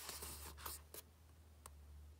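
A page of a picture book being turned: soft paper rustling with a few light clicks, fading out after about a second.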